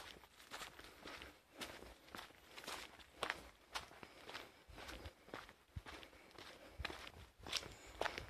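Faint footsteps of a person walking on a dirt track, about two steps a second.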